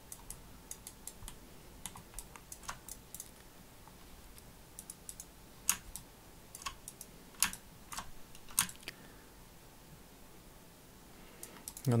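Scattered, irregular clicks of computer keyboard keys and a mouse, with a quiet stretch near the end.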